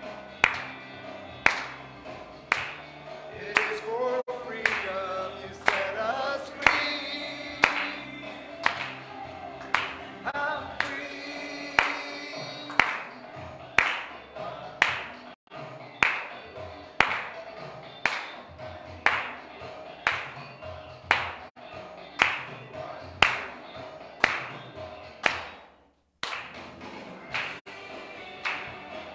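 Live church worship music: voices singing a song with a band over a steady sharp beat. The singing thins out about halfway through while the beat carries on, and there is a brief dropout near the end.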